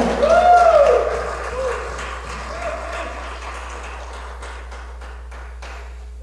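A small church congregation clapping in applause, loudest at first and dying away over a few seconds. A voice calls out briefly near the start.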